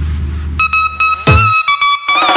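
Electronic dance music from a DJ's remix mix: a held deep bass note gives way, about half a second in, to short, bright synth stabs with gaps between them, like a break in the track.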